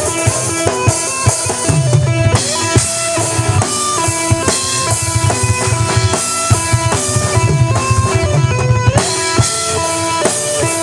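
Live metal band playing an instrumental passage: electric guitars carry a melody of held, stepping notes over bass guitar and a steady drum-kit beat.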